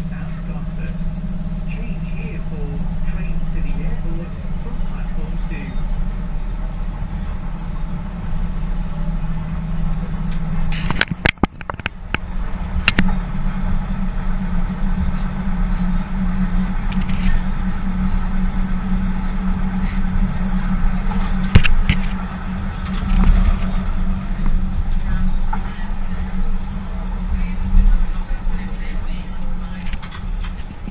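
Tyne & Wear Metro train running along the track, heard from the cab: a steady low running noise with sharp clicks about 11, 13, 17 and 22 seconds in and a brief dip in level at about 11 seconds.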